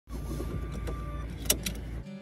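Steady low rumble inside a car's cabin, with a sharp click about one and a half seconds in and a lighter click just after.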